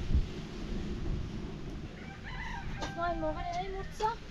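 A rooster crowing once: one drawn-out crow of about a second and a half, starting a little past two seconds in, over a steady low rumble.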